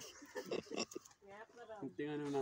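A man's voice speaking quietly in short phrases, with brief pauses between them.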